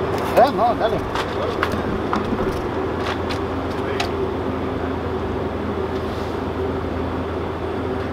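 A steady low mechanical hum with a faint steady tone runs throughout at an even level, like an engine or machinery running nearby. A few light, sharp clicks sound over it in the first half.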